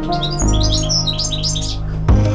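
Eurasian siskin giving a quick run of short, high chirps for about a second and a half, over steady background music.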